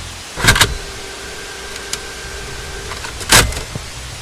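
Car sound effects with no music: two short, loud bursts about three seconds apart, with a faint steady tone and a few light clicks between them.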